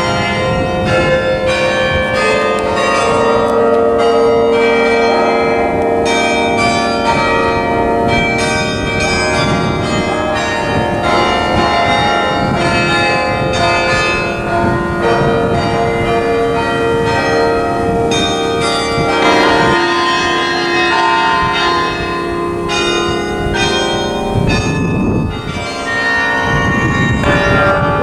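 The Bok Tower carillon playing a tune: many tuned bells struck one after another, each note ringing on and overlapping the next.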